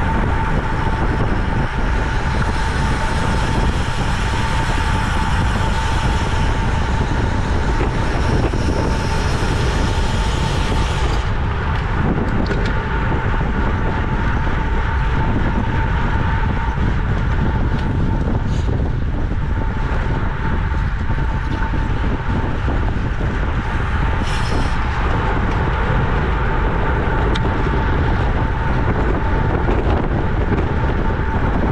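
Wind rushing over the microphone of a camera on a road racing bicycle moving at about 25 mph, with tyre and road noise beneath. A steady hum runs through the first half and fades about midway.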